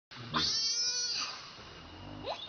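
Baby macaque screaming in distress: one sharply rising, high-pitched scream held for about a second, then fading away.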